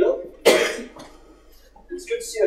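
A single loud cough about half a second in, just after a short vocal sound.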